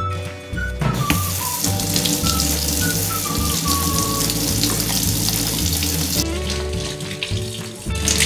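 Kitchen faucet running, its stream splashing over an apple held in the hands and into a stainless steel sink; the water starts about a second in and softens about six seconds in.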